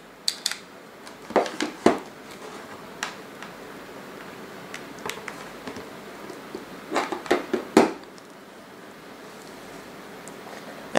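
Clicks and knocks of USB plugs being pushed into a USB power meter, a plastic battery pack and a tablet, and the devices being set down on a desk: a few in the first two seconds, single ones about three and five seconds in, and a cluster about seven seconds in.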